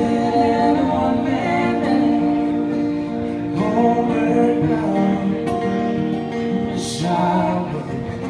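Live acoustic duo: two acoustic guitars with singing, the voice holding long notes. A short hiss sounds about seven seconds in.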